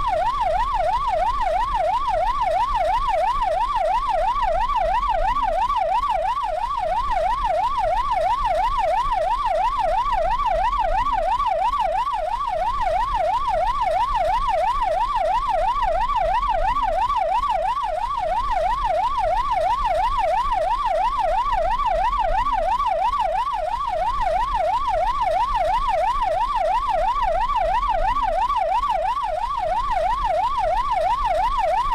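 Police car siren sounding without a break in a fast warble, its pitch sweeping up and down about three times a second, with low engine and road rumble underneath.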